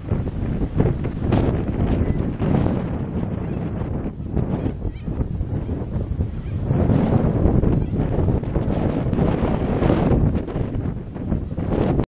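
Wind buffeting the microphone: a rumbling gust noise that swells and fades, louder in the second half.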